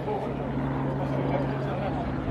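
A steady low engine hum, with people talking in the background.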